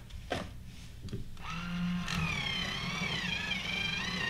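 A colored pencil being sharpened in a small handheld sharpener. After a light knock near the start, a steady grinding with a wavering, squealing whine begins about a second and a half in.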